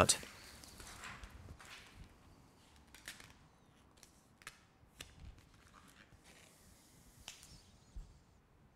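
Faint scattered rustles and light clicks of vinyl wrap film being handled against a car door, about half a dozen soft sounds spread through an otherwise quiet stretch.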